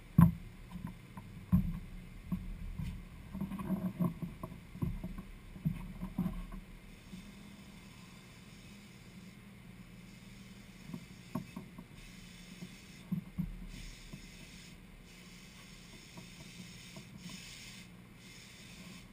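Footsteps and hollow knocks on a bare fiberglass boat hull, with a few sharp thumps in the first several seconds. From about twelve seconds in, a power grinder on the hull's fiberglass and old adhesive runs in several short hissing spurts.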